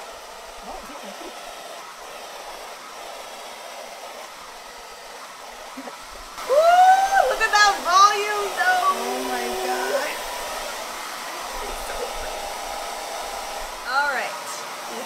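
A DevaDryer hair dryer with a diffuser attachment running steadily, blowing on curly hair. About six seconds in, a voice with rising and falling pitch rises over it for a few seconds.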